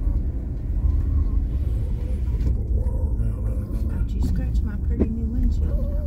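Steady low rumble of a car driving, heard from inside the cabin. About five seconds in there is a sharp click and the windshield wipers start a sweep.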